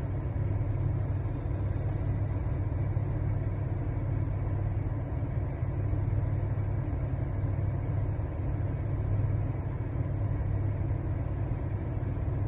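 Steady low hum of a car's running engine, heard from inside the cabin.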